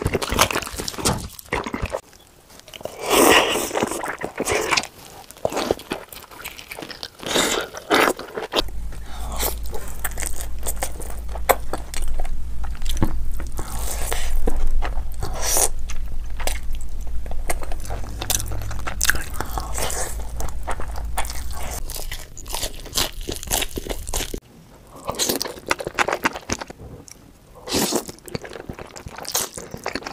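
Close-miked ASMR eating sounds: repeated crunchy bites and chewing, across several eaters and foods, starting with crunchy fried chicken. A low steady hum sits under the middle part.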